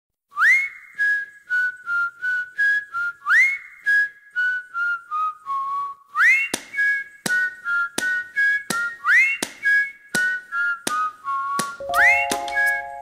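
A whistled tune in repeating phrases of about three seconds, each opening with a quick rising swoop and then stepping down through short held notes. From about six seconds in, sharp clicks keep time with it, and a fuller backing band comes in just before the end.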